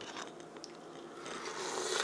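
A sip of coffee slurped from a mug: a hiss that grows louder over the last second, after a few small clicks of the mug and camera being handled.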